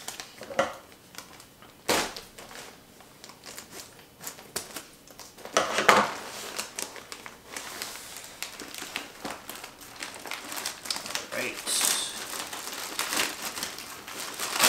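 Crinkling and rustling of a shipping package being opened by hand, with irregular crackles and a couple of louder rustles.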